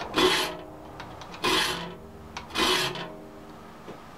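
Hand file rasping across the steel teeth of a handsaw clamped in a saw vise: three short, even strokes about a second and a quarter apart, with the blade ringing faintly after each. The dull saw is being sharpened tooth by tooth with counted file strokes.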